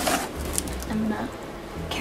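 Soft rustling and handling noises as a blanket-wrapped bundle is picked up and moved, with a brief hum of a voice about a second in.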